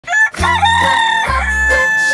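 A rooster crowing as a children's song's music starts, with a low bass note entering about half a second in.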